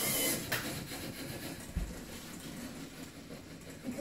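Small LEGO-built robot running, its electric motors and gears giving a steady mechanical whir, with a single low thump a little under two seconds in.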